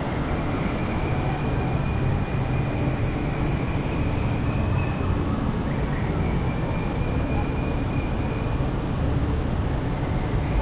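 Steady city street ambience: a low rumble of road traffic with passers-by talking indistinctly. A faint, thin, high steady tone sounds for a few seconds early on, breaks off, and comes back for a couple of seconds.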